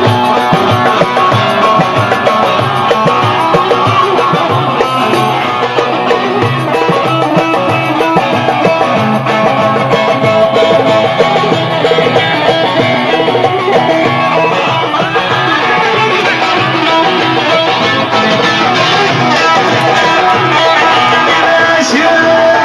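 Live instrumental music led by plucked strings over a steady beat.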